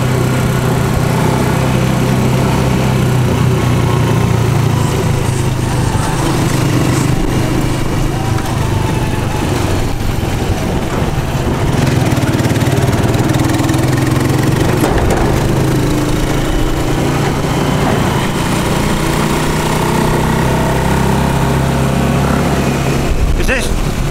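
Motorcycle engine of a passenger tricycle running steadily under way in traffic, heard from the sidecar, with a steady low drone and road noise.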